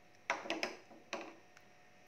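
A few light knocks of kitchenware being set down while a salad is plated: a quick cluster about a quarter second in and another single knock about a second in.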